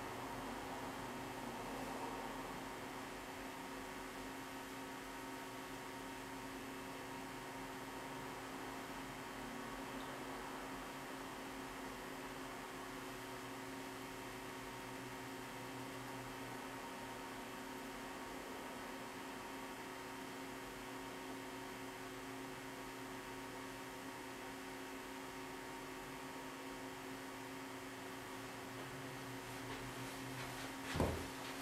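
Steady electrical hum over a faint even hiss, unchanging throughout: background room tone with no distinct events.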